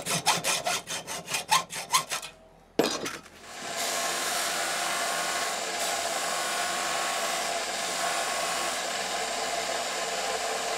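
A hacksaw cutting a 6 mm mild steel knife guard, about three strokes a second, stops about two seconds in. Then a Scheppach BD7500 belt and disc sander starts up and runs steadily, grinding the steel guard.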